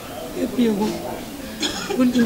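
Quiet conversational speech, with a short cough-like burst near the end.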